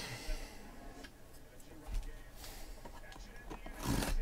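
Hands handling a cardboard shipping case: faint taps and rubbing on the cardboard, then a louder scratchy scrape near the end as a blade is drawn along the packing tape.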